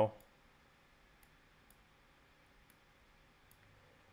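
Several faint clicks at uneven spacing from a laptop's pointing device as vertices are selected and dragged, over a quiet room.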